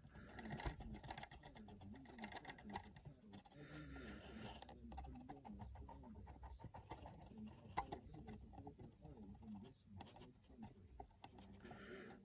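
Very faint, irregular ticking and patter of a small paintbrush dabbing rust-coloured acrylic paint onto a plastic HO scale model boxcar.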